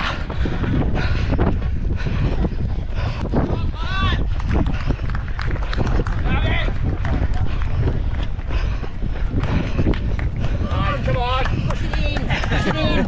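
Sound of a runner carrying a camera mid-run: a steady low rumble of wind and movement on the microphone, with footfalls. Short shouted calls from voices break in a few times, about four seconds in, around six and a half seconds, and again near the end.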